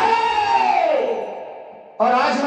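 The close of a live Hindi devotional song: a man's held sung note slides down in pitch and fades away over about a second and a half, with the accompaniment dropping out.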